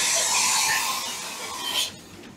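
CNC machining centre running: a steady hiss of coolant spray inside the enclosure with a faint machine whine, which cuts off suddenly near the end.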